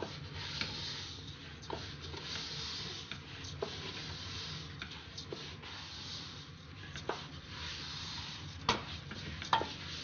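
A wooden spoon stirring raw rice and chopped onions in oil in a stainless steel pot, with scattered sharp taps of the spoon against the pot, over a soft steady hiss.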